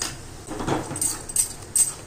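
A steel spoon stirring and scraping thick gram-flour batter around a steel kadai, a run of short scrapes and clinks every third of a second or so as the batter is worked quickly while it cooks and thickens.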